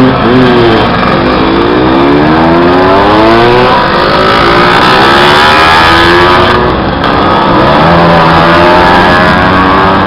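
Vintage Lambretta and Vespa scooters' small two-stroke engines revving and pulling away one after another as they pass close by. The engine pitch rises again and again as each new scooter accelerates.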